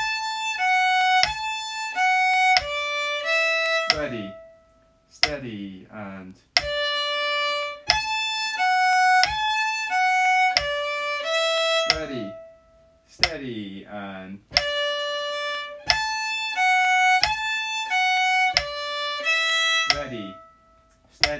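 Fiddle playing the same short bar three times at a slow practice tempo, in separate held, bowed notes, with a spoken count-in between repeats.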